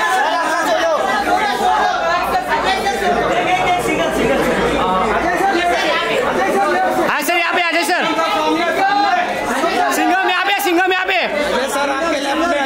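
Many people talking and calling out at once, a dense, overlapping chatter in a large hall, with a few sharp clicks heard over it.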